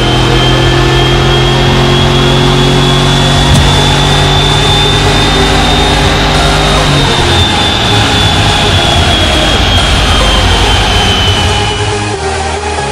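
Chevrolet Camaro engine running at high rpm on a chassis dyno, a long sustained pull. A high whine climbs slowly and then falls away, and the engine note shifts down about seven seconds in.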